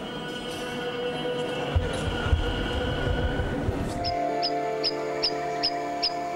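Crowded church ambience with a few low knocks, cut off about four seconds in by background music of steady held notes, over which a short high chirp repeats two or three times a second.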